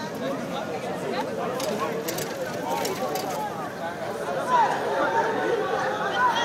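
Crowd chatter: many voices talking at once, overlapping, with no single voice standing out.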